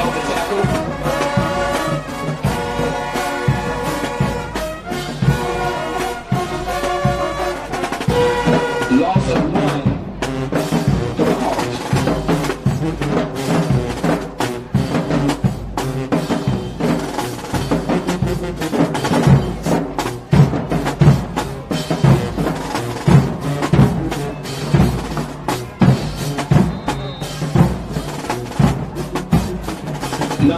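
Band music with brass and drums: held brass chords for about the first ten seconds, then a steady drum-driven rhythm with brass over it.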